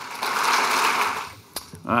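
Audience applauding, dying away about a second and a half in, followed by a single sharp click.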